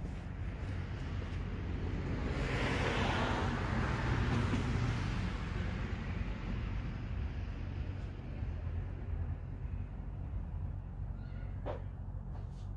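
A vehicle going by, its noise swelling over a few seconds and then fading, over a steady low hum. A brief short call comes near the end.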